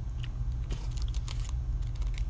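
Small scattered clicks and crinkles of plastic fishing tackle and its packaging being handled, over a steady low hum.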